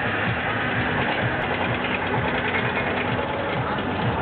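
Amusement-ride machinery running with a steady low hum over a dense, even background noise.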